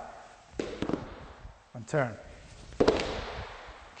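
Heavy ViPR rubber training tubes slammed down onto a wooden floor twice, about two seconds apart, each a sharp bang with a short ring after it. The second bang is the louder.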